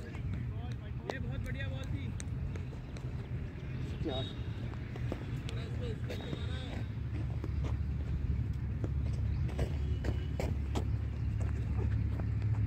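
Faint, scattered voices over a steady low rumble that grows louder near the end, with a few light knocks.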